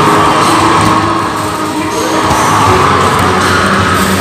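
Loud arcade din from a row of basketball shooting machines: their electronic music and game sounds play continuously, with a rising electronic tone about two seconds in and crowd noise behind.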